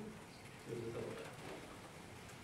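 A brief, low, indistinct murmur of a person's voice about a second in, lasting about half a second.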